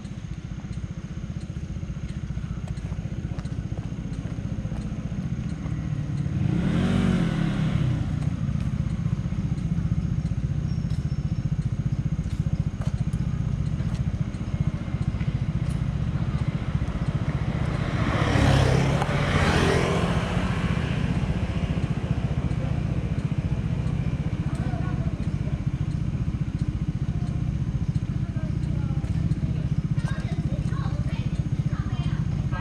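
A motorcycle engine idling with a steady low rumble, while vehicles pass by twice on the road, about seven seconds in and again around eighteen to twenty seconds in, the second pass louder.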